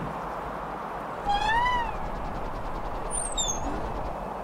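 A single meow-like call, rising then falling in pitch, over a steady hiss; near the end a brief high whistle glides downward.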